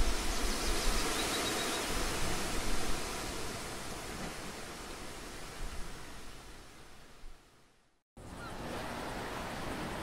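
Steady rushing ambience of ocean surf, fading out to a brief silence about eight seconds in. The surf hiss then returns with a few faint bird chirps.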